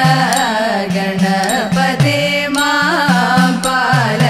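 A group of women singing a Thiruvathirakali song in a Carnatic style, with percussion strokes keeping a steady beat.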